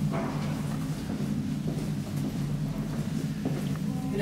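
Steady low hum with several steady tones from a WPM-modernized 1962 KONE elevator's machinery running, with a click at the start.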